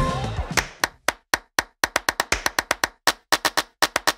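Music fading out, then a run of sharp, dry percussive clicks like wood-block taps with dead silence between them, irregular at first and coming faster towards the end: an outro sound effect.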